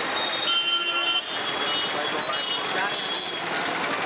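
Busy market street traffic with voices in the background; a vehicle horn sounds about half a second in for under a second, and shorter high tones follow a second or so later.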